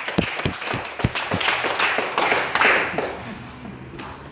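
Scattered hand-clapping from a small audience, irregular claps that fade away by about three seconds in.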